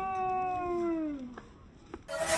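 A high voice cheering, one long drawn-out 'yaaay' that falls in pitch and fades out about a second in, followed by a couple of faint clicks.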